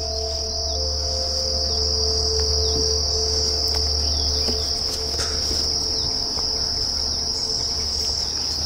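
A steady, high-pitched chorus of calling insects, unbroken throughout.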